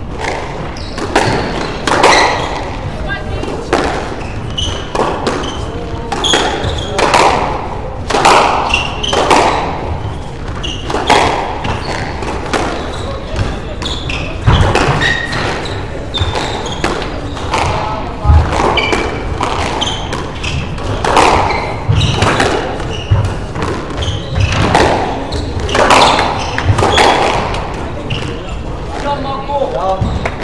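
Squash rally: the ball cracks off rackets and the court walls in sharp, echoing hits, roughly one every second or two.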